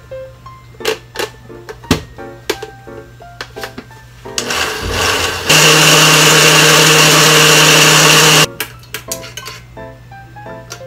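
Countertop electric blender motor starting about four seconds in, running loud and steady at full speed for about three seconds while blending a liquid corn dressing, then cutting off suddenly. Soft piano music plays underneath.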